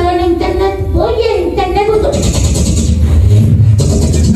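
A man's high-pitched voice talking through a microphone and PA system, with a brief hiss about two seconds in.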